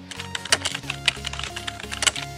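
Computer keyboard typing sound effect, a quick run of key clicks starting about half a second in, over electronic background music.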